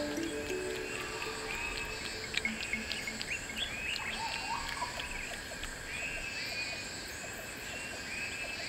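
Tropical forest ambience: a bird call that rises and falls in pitch repeats about once a second among scattered short chirps, over a steady high insect drone. Soft low music notes fade out in the first two seconds.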